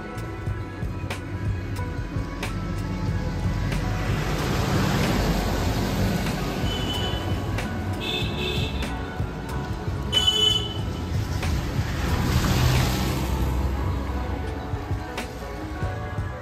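Background music over road traffic: cars passing close by on a narrow road, the sound swelling and fading twice.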